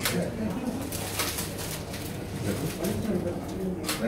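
Low murmur of voices in a room, broken by several sharp clicks: two about a second in and one near the end.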